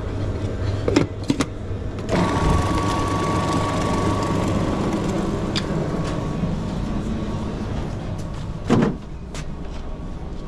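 Robot Coupe food processor switched on about two seconds in, its motor running steadily and growing fainter toward the end. A low hum runs underneath, and a thump comes near the end.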